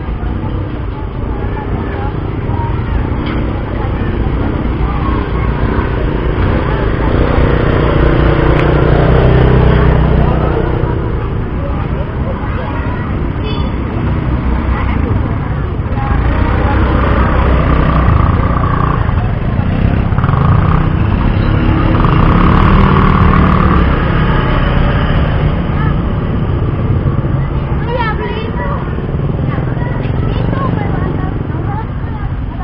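Indistinct voices over a loud, steady low rumble.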